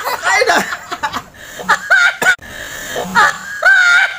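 Several people laughing in quick, high-pitched fits, a girl's laugh among them, with a higher drawn-out cry near the end.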